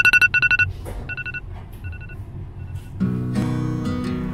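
A short electronic trilling ring that repeats about three times, fainter each time, like an echo. Acoustic guitar music starts about three seconds in.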